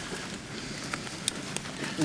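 Quiet outdoor field ambience with a few short, light clicks.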